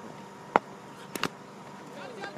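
Three sharp clicks or knocks over a quiet outdoor background: one about half a second in, then a quick pair just after a second.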